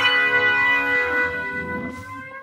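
Isolated electric guitar track: a note struck at the start and left to ring out, its sustained tone slowly fading away.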